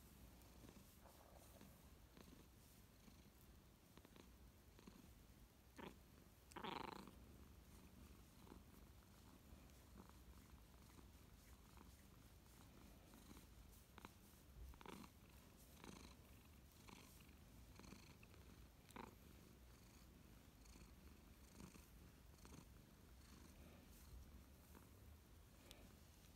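Long-haired calico cat purring faintly and steadily while being scratched under the chin. A brief louder sound comes about seven seconds in.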